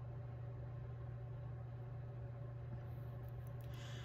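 Quiet room tone with a steady low hum, and a few faint small ticks near the end as fine beading wire is handled and threaded back through a metal crimp tube.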